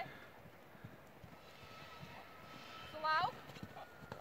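Horse's hoofbeats on grass as it canters around the paddock, faint irregular thuds. About three seconds in, a short, high, rising voice call rises above them.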